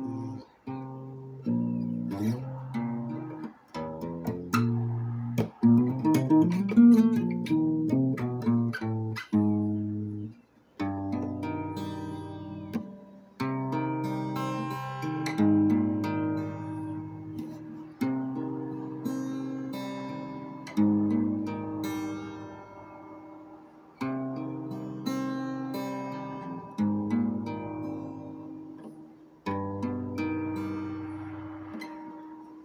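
Acoustic guitar played by hand: quick runs of single notes for the first ten seconds or so, then chords struck every two to three seconds and left to ring out.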